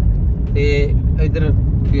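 Car being driven, heard from inside the cabin: a steady low rumble of engine and tyres on a rough, patched road surface.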